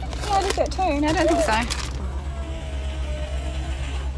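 Steady low rumble of a car driving, heard from inside the cabin, with voices over it in the first two seconds.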